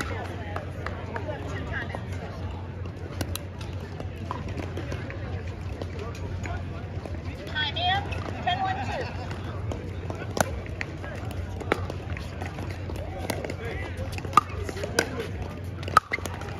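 Pickleball paddles striking the ball: a few scattered sharp pops, then a run of hits about a second apart in the second half as a rally gets going, over background crowd chatter and a steady low hum.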